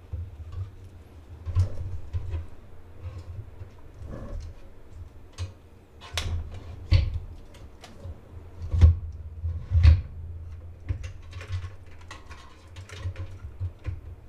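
A graphics card being fitted by hand into a PC case: scattered clicks, knocks and scrapes of the card, bracket and case parts, with a few sharper knocks in the middle, over a low steady hum.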